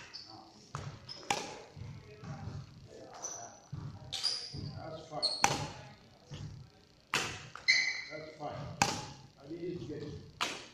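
Badminton rackets striking a shuttlecock back and forth in a rally, a sharp crack every second or two, with faint voices in the hall behind.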